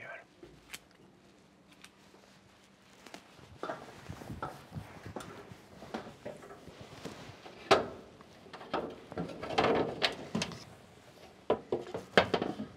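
Footsteps on an aluminium ladder and knocks and clatter of metal as a combine harvester's side access hatch is unlatched and swung open, with one sharp click about two-thirds of the way through.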